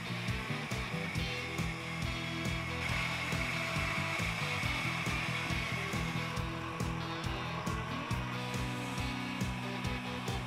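BS-128HDR metal-cutting band saw running, its blade cutting through a block of dry pallet wood with a steady whirr, under background techno music with a steady beat of about four a second.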